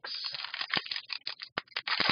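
A trading card pack's wrapper crinkling and tearing as it is opened by hand: a dense, irregular run of crackles.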